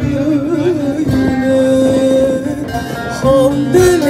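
A woman singing a Turkish folk song with wavering, ornamented notes over a plucked string accompaniment, amplified through PA speakers. She holds one long note through the middle.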